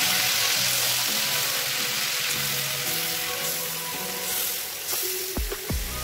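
Marinated chicken pieces sizzling as they fry in hot oil and ghee in an aluminium kadai. The sizzle slowly dies down, and a few knocks come near the end.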